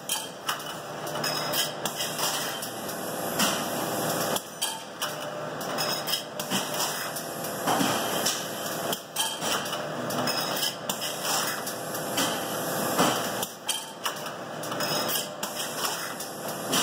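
Automated petri dish handling line running: irregular hard plastic-and-metal clacks and knocks, several a second, as dishes are destacked, moved along the lanes and stacked, over a steady machine noise.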